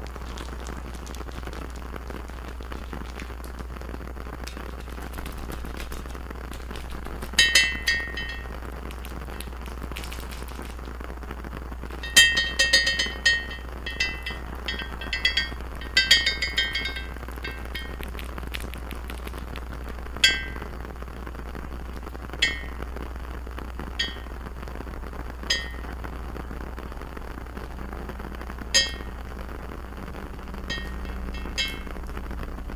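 Glass bottle being tapped, each tap ringing briefly. The taps come in quick clusters about a quarter of the way in and through the middle, then singly every couple of seconds. A steady low hum runs underneath.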